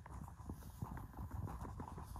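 Footsteps: a quiet run of short, irregular soft knocks.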